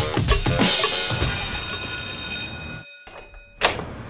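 Intro music with sustained tones ends about two and a half seconds in; after a brief quiet gap comes a single sharp thump from a wooden front door, the loudest sound here.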